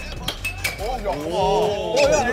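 Air hockey puck and plastic mallets clacking on the table a couple of times, followed by raised, excited voices calling out.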